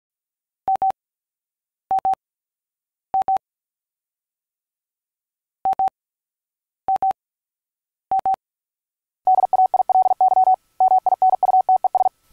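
Morse code beeps on a single steady tone. There are six pairs of short beeps about a second apart, with a pause after the third pair. From about nine seconds in comes a fast, continuous run of Morse.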